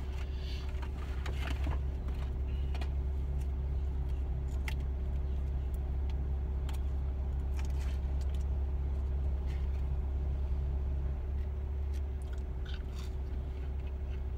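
Steady low hum of a vehicle idling, heard inside the cabin, with scattered light clicks and rustles of a food carton being handled.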